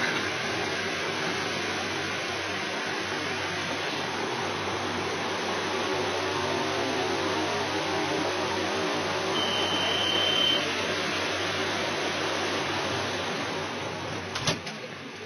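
Steady noise inside a stopped Madrid Metro Line 5 car with its doors open: ventilation and station hubbub. About nine and a half seconds in, a steady high warning tone sounds for about a second: the signal that the doors are about to close.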